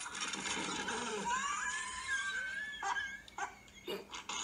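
A strange, high, wavering laugh-like cry played through small laptop speakers, its pitch sliding up and down, breaking into a few short bursts in the last second.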